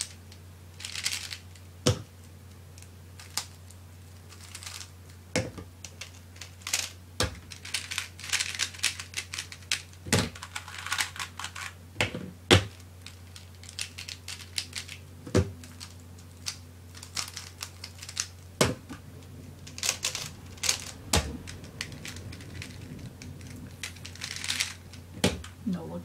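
Plastic 3x3 speed cube being turned fast in a speedsolve: quick runs of clicking and clacking as the layers snap round, with a sharper knock every few seconds, over a faint low hum.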